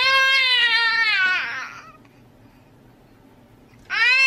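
A baby's long, high-pitched squeal lasting about a second and a half, dropping in pitch as it trails off; a second squeal starts near the end.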